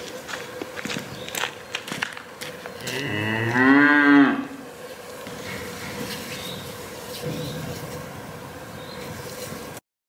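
A cow mooing once: one long call about three seconds in, rising and then falling in pitch, over a faint steady hum. A few light knocks come before it.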